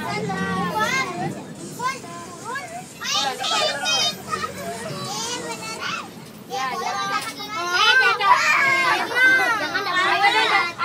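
Children's voices chattering and calling out together, several at once, louder near the end.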